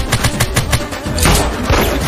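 Rapid gunfire: a quick string of shots in the first second, then a louder burst of noise a little past the middle, over a bass-heavy music track.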